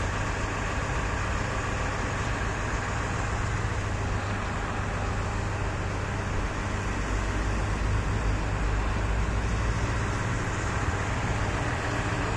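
Steady low rumble of car engines idling close by, over a constant wash of street traffic noise; the rumble swells for a few seconds in the second half.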